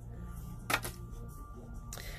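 A sharp small click about three-quarters of a second in, and a fainter one near the end, from the small parts of an airsoft pistol's safety and slide being handled; otherwise quiet.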